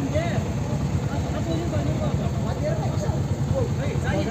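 Motorcycle engine running steadily with a fast, even low pulse, with voices of people in the background.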